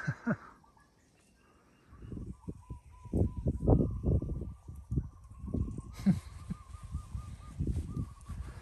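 A short laugh, then from about two seconds in a run of soft, irregular low thuds: stockinged footsteps and phone handling as someone steps carefully onto a freshly poured concrete slab to test whether it has hardened enough to walk on.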